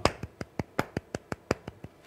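Light hand claps in a steady, even run of about six a second, sounding out a sixteenth-note subdivision of the beat.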